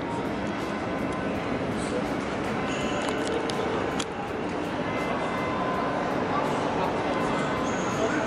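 Steady background noise of a large indoor shopping centre, with faint background music and indistinct voices, and one sharp click about four seconds in.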